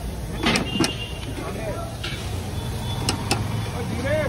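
Steady low rumble of passing road traffic, with a few sharp clinks of a steel serving spoon against steel pots, two close together about half a second in and two more about three seconds in.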